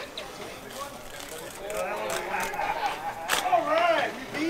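People talking in the background, unclear words, growing louder in the second half, with a sharp click near the end.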